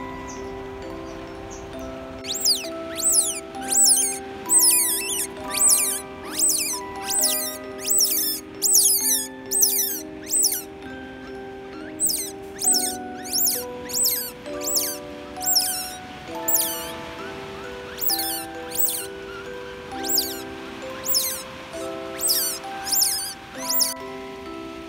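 Otter pups about eleven days old squeaking: a long string of short, high-pitched squeals that slide downward, roughly two a second, in three runs with brief pauses, loud over soft background music.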